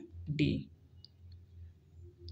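A man's voice says one short syllable ("D"), then a pause with a few faint, sharp clicks over a low steady hum.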